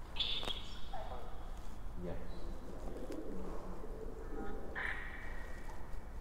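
A bird cooing in low, soft phrases, between two short high-pitched tones: one at the very start and one starting near the end.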